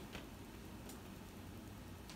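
Very quiet room tone with a faint hiss and a few soft clicks.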